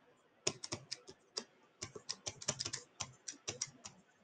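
A stylus tip tapping and scratching on a pen tablet while words are handwritten: faint, quick, irregular clicks, several to the second.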